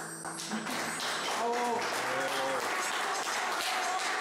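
The band's last chord cuts off at the start, then a crowd claps steadily, with voices calling out over the applause.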